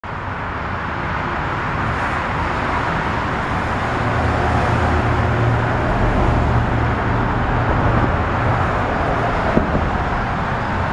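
Steady road traffic noise heard from beneath a bridge, with a deeper low rumble swelling through the middle and fading near the end; a single sharp click shortly before the end.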